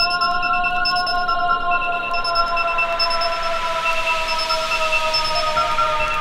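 Acid/hard trance track in a breakdown: a held, bright synth chord of several high tones that sag slightly in pitch, with a noise sweep swelling toward the end and no kick drum.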